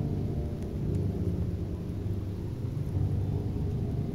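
Muffled underwater pond ambience: a deep, steady rumble, with a faint sustained musical drone lingering under it.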